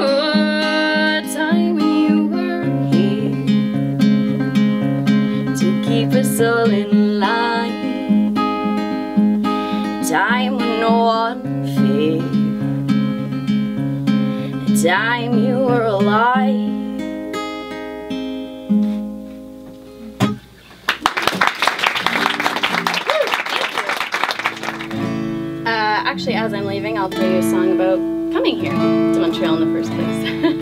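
Solo steel-string acoustic guitar with a woman's singing voice finishing a song, the guitar ringing out and fading. Audience applause follows for about four seconds, about two-thirds of the way through, then the guitar starts strumming again.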